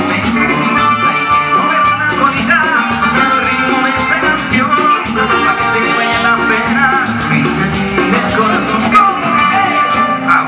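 Live Latin dance band playing through stage speakers: keyboards, guitars, drum kit and hand percussion over a steady dance beat.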